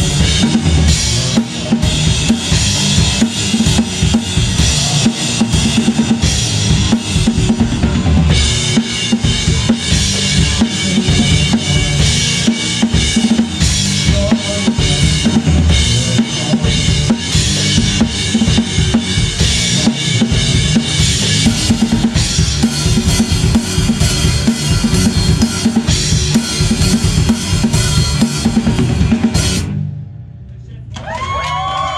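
Rock band playing live, heard from right behind the drum kit: fast kick, snare and cymbal hits loud over electric guitar. The cymbals come in brighter about eight seconds in, and the song stops just before the end.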